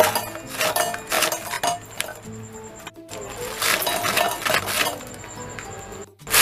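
Oreo biscuits dropped into an empty stainless-steel mixer-grinder jar, making a series of light clinks and clatters against the metal, over background music.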